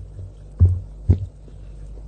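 White chalk coated in cocoa powder crunching close to the mic: two low crunchy thuds about half a second apart, over a steady low hum.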